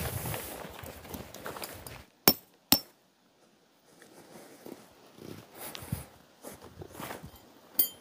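Two sharp strikes of a hammer on a tent peg, about half a second apart, amid faint footsteps and rustling on dirt.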